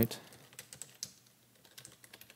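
Computer keyboard typing: a quick run of soft key clicks, with a short pause a little past the middle.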